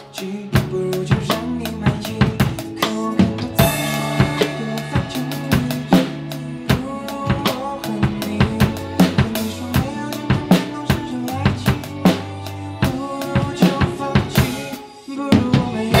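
Acoustic drum kit played along to a pop backing track: kick, snare and cymbal hits over the song's bass and chords. A crash cymbal opens a fuller section about four seconds in, and the playing breaks off briefly just before the end.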